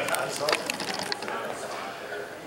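A quick run of small mechanical clicks, ratchet-like, lasting about a second and then thinning out.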